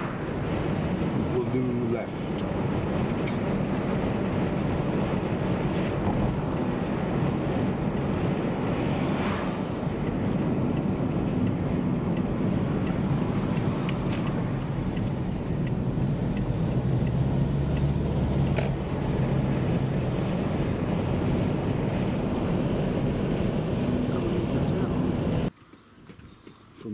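Car driving, heard from inside the cabin: steady engine and tyre drone with a low hum, which grows stronger for a couple of seconds about two-thirds of the way through. It cuts off suddenly just before the end.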